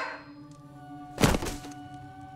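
Film soundtrack: music holding sustained notes, with one heavy thud about a second in.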